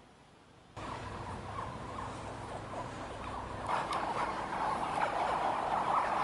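A crowd of about two-week-old Siamese crocodile hatchlings calling together: a dense chorus of short, overlapping calls. It starts abruptly about a second in and grows louder a few seconds later.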